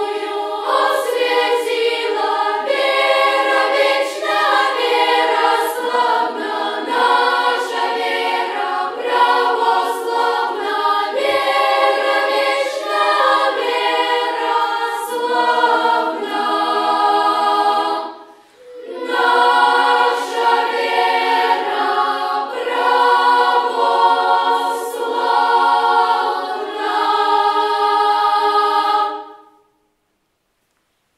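Children's choir singing a cappella in several parts, with a brief pause for breath about two-thirds of the way through; the singing ends just before the close.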